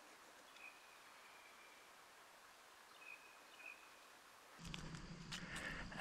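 Near silence in woodland: a faint hiss with a few faint, high bird chirps about half a second in and again just past three seconds. A low hum comes up near the end.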